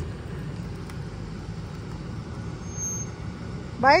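Ford Expedition SUV's engine running, a steady low rumble. Near the end a voice calls out "bye".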